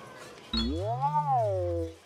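A cartoon character's drawn-out wordless vocal sound that starts about half a second in, rises and then falls in pitch, and ends just before two seconds.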